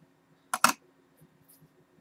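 Two quick clicks a fraction of a second apart, a one-ounce silver coin being set down on the metal platform of a small digital pocket scale.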